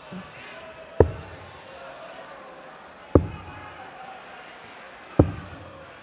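Three steel-tipped darts thudding one after another into a Unicorn Eclipse HD bristle dartboard, about two seconds apart: one player's three-dart visit.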